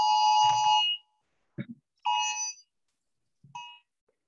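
Phone sounding an Amber Alert: the wireless emergency alert tone, two harsh pitches held together. It sounds once long and cuts off about a second in, then repeats in two shorter, fainter blasts, the last near the end.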